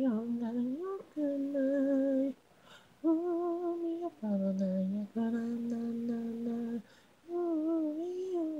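Unaccompanied female singing voice from an isolated a cappella vocal track. It holds a string of long, steady notes, about five of them, with brief breaks between notes. The first note glides in pitch and the longest is held for about a second and a half near the end.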